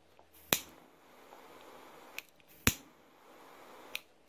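Disposable lighter being struck: sharp clicks, two loud ones about two seconds apart and a couple of fainter ones, with a faint hiss between them, as the trimmed tag ends of a braided-line fishing knot are burned.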